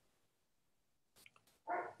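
Near silence in a pause of speech, with a few faint clicks, then a man's short voiced sound near the end as he starts talking again.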